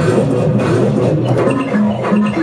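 Live experimental electronic music from synthesizers and a sequencer: a steady low bass line under short synth notes that step up and down in pitch.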